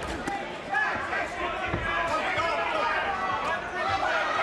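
Boxing arena crowd: many voices shouting and chattering at once, with a few dull thuds of gloved punches landing.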